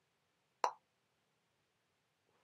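A single short pop a little over half a second in, against near silence.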